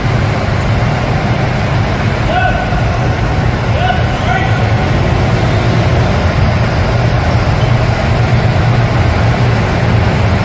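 Go-karts running on an indoor karting track: a loud, steady engine drone, with voices in the background.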